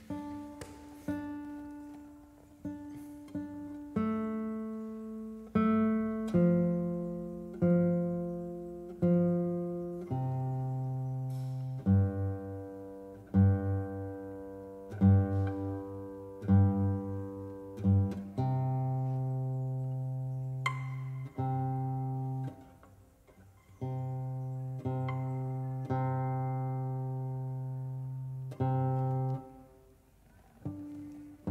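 Classical guitar being tuned by ear, and perhaps the Portuguese guitar too: single strings and pairs of strings are plucked one at a time and left to ring while the pegs are turned. From about ten seconds in, the same low note is plucked over and over, pulsing slightly as two strings settle into tune.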